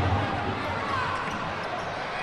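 Indoor futsal court sound: a steady crowd din in a hall, with the ball being kicked and bouncing on the court.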